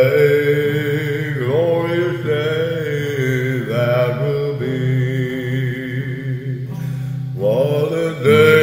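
A man singing a slow gospel hymn in long, drawn-out notes that glide between pitches, over a steady sustained instrumental backing.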